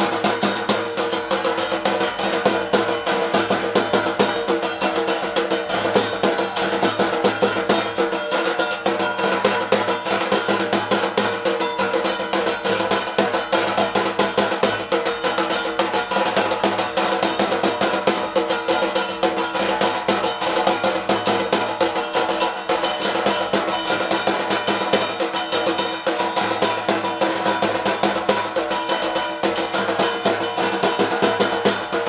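A large rope-laced barrel drum played in a fast, unbroken beat, with steady ringing tones held underneath.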